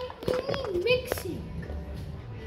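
A child's voice, drawn out and wavering, in the first second, with a few light clicks; quieter after that.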